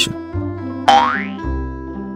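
Cartoon sound effect: a quick rising pitch glide, like a boing or slide whistle, about a second in as the animated cat jumps out of the box, over light background music.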